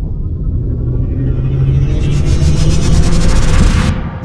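Cinematic logo-intro sound effect: a deep rumble that swells steadily louder, with a rising hiss building over it from about halfway, cutting off abruptly just before the end.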